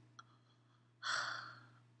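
A woman's breath out, a soft sigh about a second in that fades away over a second.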